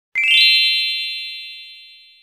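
Bright chime sound effect: a quick rising run of high, bell-like notes that ring on together and fade away over about two seconds.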